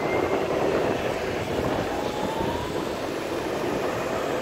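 Electric skateboard rolling on asphalt: a steady rumble of the wheels on the road surface, with a faint whine that rises in pitch about halfway through.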